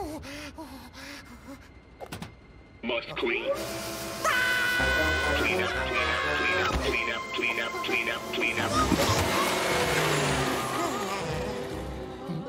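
Cartoon soundtrack: a Rabbid's wordless vocal noises, then from about four seconds in louder music with sound effects.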